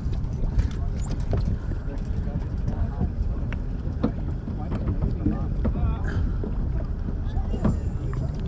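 Wind buffeting the microphone on a small boat on open water, a steady low rumble, with scattered light clicks and taps.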